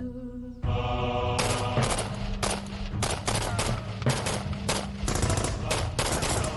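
Rapid bursts of automatic rifle fire in an exchange of shots, starting about a second and a half in and running on densely.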